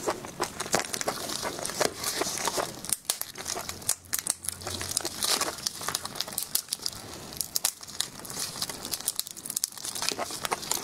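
Crinkling of disposable plastic gloves and crackling of shellfish shell as gloved hands pull seafood apart, a close, continuous run of small sharp clicks and crackles.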